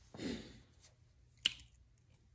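A short breath near the start, then one sharp click about a second and a half in.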